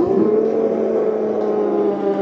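Spectators and players cheering a goal with several long, held shouts overlapping, a few voices falling in pitch near the end.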